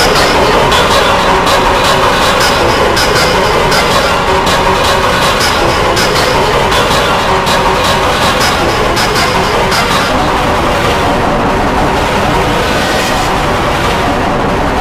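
Loud, dense, distorted noise spread across all pitches, with a fast run of sharp clicks that fades out after about ten seconds.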